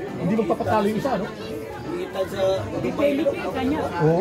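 People talking casually, several voices chattering.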